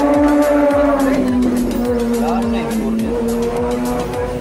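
Airplane passing overhead: a steady drone that slowly falls in pitch as it goes by.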